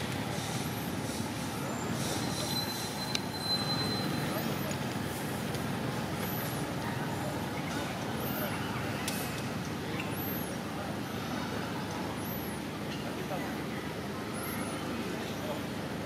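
Steady outdoor background noise, with a short, high, thin chirp repeating every one to two seconds.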